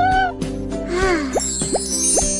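Light, playful music: held notes, then from about a second in a run of quick sliding-pitch effects.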